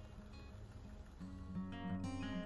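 Strummed acoustic guitar music, faint at first and growing louder from about a second in.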